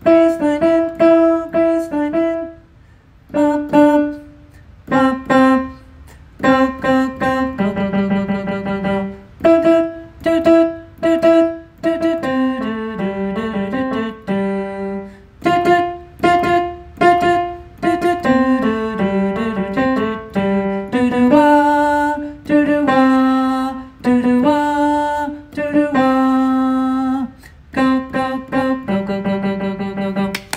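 Piano playing a single tenor harmony line one note at a time, in short repeated notes with brief gaps between phrases.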